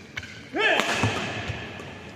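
A player's short, loud shout during a badminton rally, about half a second in, its pitch rising then falling. Sharp racket hits on the shuttlecock and footfalls on the court sound around it.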